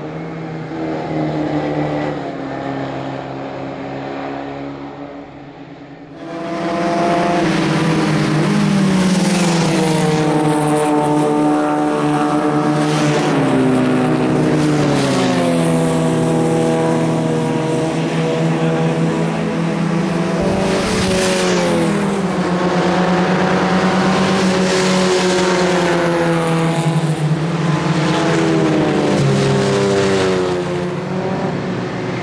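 Open-wheel race car engines at speed, fainter at first and then much louder from about six seconds in. The engine note climbs and drops repeatedly as the cars accelerate and change gear.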